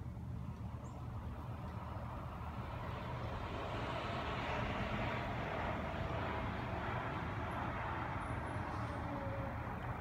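Distant road traffic: a vehicle's noise swells up and fades away through the middle, over a steady low rumble.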